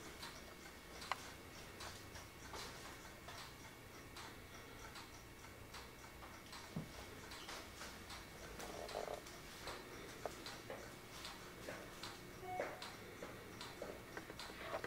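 Faint, repeated ticking of a wall clock over a low, steady room hum.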